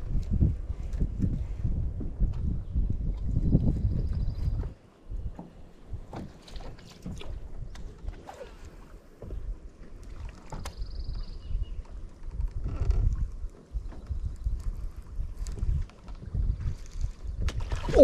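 Wind buffeting the microphone, heavy for the first four or five seconds and lighter after, with scattered light clicks and knocks from rod-and-reel handling in a boat.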